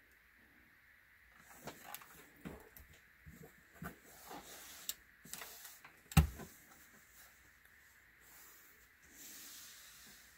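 Faint rustling of cotton fabric and an iron gliding over it on an ironing board while a seam is pressed, with scattered soft clicks, one sharp knock about six seconds in, and a short soft hiss near the end.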